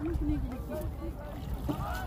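People talking at a distance in unclear voices, over a steady low rumble of wind noise.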